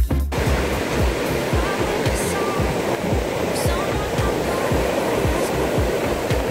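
A song cuts off at the start, leaving ocean surf breaking and washing up the sand as a steady rush, with irregular low thumps underneath.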